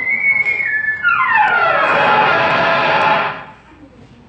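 Falling whistle sound effect for a drop down a hole: a high held tone that steps down slightly, then, from about a second in, a long glide down in pitch with a rushing noise underneath. It cuts off a little after three seconds.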